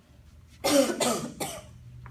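A woman coughing: three quick coughs in a row, about half a second in.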